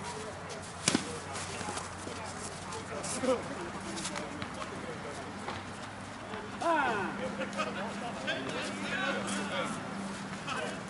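A single sharp crack of a slowpitch softball bat hitting the ball about a second in, followed by distant players shouting and calling across the field, louder from about seven seconds in.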